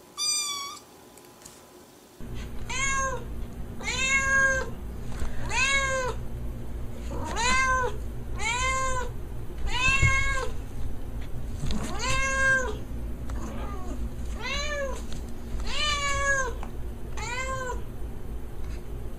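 A kitten gives one short, high mew at the start. Then a calico cat meows over and over: about a dozen loud meows, each rising and then falling in pitch, roughly one a second. A steady low hum runs beneath them.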